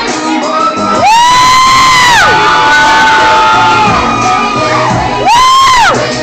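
Two loud, high-pitched whoops from an audience member close by, a long one about a second in and a shorter one near the end, over crowd cheering and club music.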